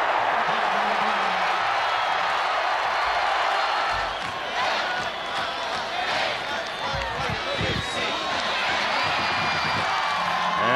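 Large stadium crowd cheering after a touchdown: a steady, loud din of many voices.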